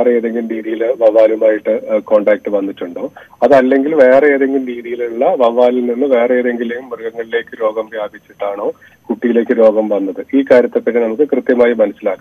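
A man speaking Malayalam over a telephone line, the voice thin and narrow, with nothing in the higher range. He talks with short pauses, the longest just after the third second and around the ninth.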